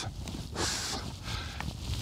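Steady low wind rumble on the microphone, with a brief soft rustle about half a second in, while hands handle a small jig.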